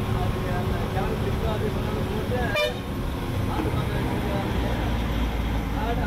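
Bus engine running steadily while the bus climbs a winding mountain road, heard from inside the cabin. There is a short knock about two and a half seconds in, and a deeper rumble from about four and a half seconds in.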